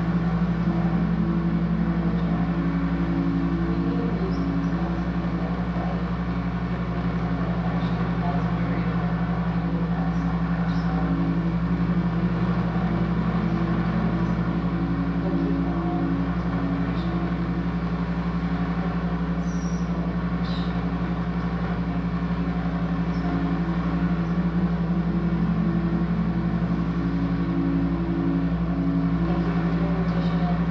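Live electronic drone music played through a PA speaker: a steady low hum held throughout, with a higher broken, pulsing tone that fades in and out over it.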